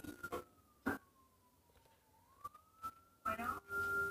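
Faint siren wailing in the distance: one slow tone falling and then rising back up. A few short clicks and a brief rustle come from the phone being handled.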